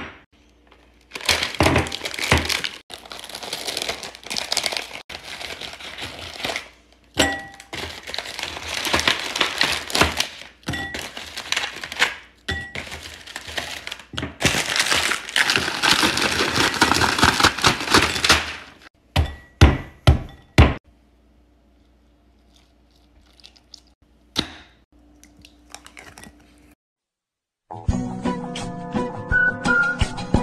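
Plastic cookie packaging crinkling steadily as Oreo cookies are pulled out and dropped into a glass bowl, with light clinks against the glass. The crinkling stops about eighteen seconds in, followed by a few sharp, loud knocks.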